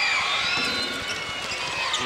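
Basketball game sound in an arena: steady crowd noise, with short high squeaks and knocks from players moving on the hardwood court as a free-throw rebound is fought for.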